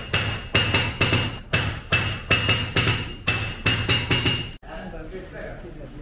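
Smith's hand hammer striking a red-hot steel bar on an anvil while forging a sword blade: steady blows about two and a half a second, each with a bright metallic ring. The hammering stops abruptly about four and a half seconds in.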